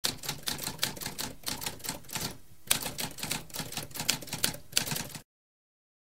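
Typewriter keys being struck in a quick, uneven run of clicks, with a brief pause about two and a half seconds in, stopping abruptly after about five seconds.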